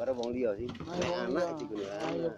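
People talking: voices in conversation, with no other sound standing out.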